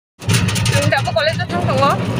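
Engine of a moving road vehicle running steadily, heard from inside while riding, with people's voices over it.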